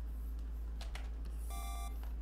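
A short electronic beep, a bright tone lasting about half a second, sounds about one and a half seconds in over a low steady hum.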